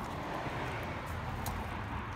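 Steady rushing noise of a distant vehicle passing, with a brief click about one and a half seconds in.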